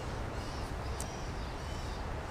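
Small birds chirping faintly and repeatedly over a steady low rumble of moving water and wind, with one sharp click about halfway through.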